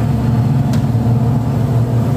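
Steady hum of an electric motor-driven machine running, a constant low drone with a few higher steady tones above it.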